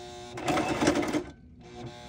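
Singer electric sewing machine running a short burst of stitching, starting about half a second in and lasting under a second, over a steady hum.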